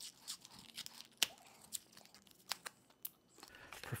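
Waxed paper cup being torn and peeled off a cured silicone rubber mold: faint paper crackling with a few sharp snaps.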